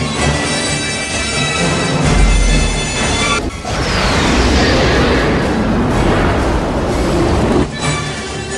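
Film soundtrack: orchestral score holding sustained tones, with a deep boom about two seconds in. After a brief drop just past the middle, a falling whoosh comes in over a dense rushing noise.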